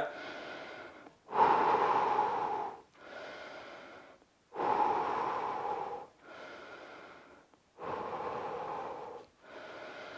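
A man breathing deeply and slowly, in and out about three times, as recovery breathing during a workout rest. Each breath lasts about a second and a half, and the quieter and louder breaths alternate.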